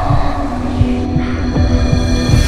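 Horror-film sound design: a low throbbing drone with a steady humming tone, with higher ringing tones joining about halfway through.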